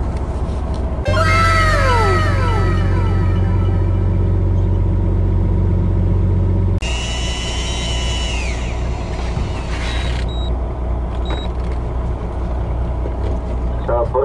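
Steady low drone of the fishing boat's engine, with a few short whistling tones that rise briefly and fall away in pitch about a second in, and a higher tone that dies away a few seconds later.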